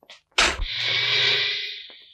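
A short thump, then a long breathy exhale that fades out near the end.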